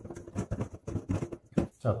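Plastic bowl scraper working risen bread dough out of a stainless steel bowl: a run of short, irregular scrapes.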